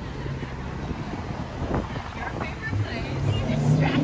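City street traffic: a vehicle engine hums steadily and grows louder near the end, over general street noise, with passers-by talking faintly.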